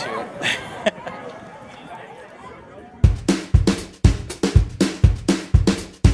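Quiet outdoor ambience with faint voices, then about three seconds in a background music track comes in with a steady drum-kit beat of kick and snare.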